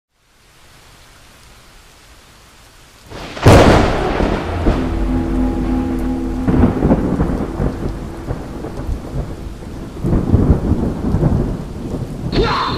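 Thunderstorm sound effect: after a few seconds of faint hiss, a sudden loud thunderclap about three seconds in, followed by long rolling rumble over steady rain, with another swell of rumble near the end.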